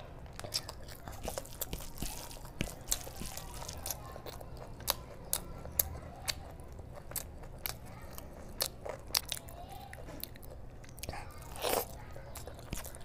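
Close-miked chewing of a mouthful of rice and curry: irregular wet clicks and smacks of the mouth. A longer, louder wet sound comes near the end.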